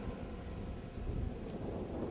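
Wind on the microphone: a low, uneven rumble.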